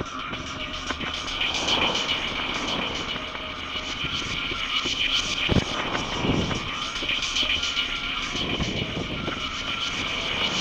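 Electric mobility scooter driving along a paved footpath: a steady high motor whine with a string of regular clicks.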